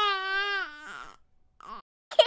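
Baby crying: a high wail that falls in pitch and trails off in the first second, then a brief whimper near the end.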